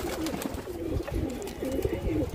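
Domestic pigeons in a loft cooing: low, repeated coos.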